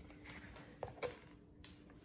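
Quiet room with a faint steady hum and two soft clicks about a second in, likely from handling the plastic bag and measuring scoop.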